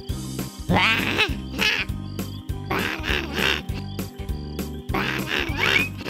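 Cartoon voice effects for a fanged bat: three bursts of warbling, pitch-bending cries about two seconds apart, over background music with a steady beat.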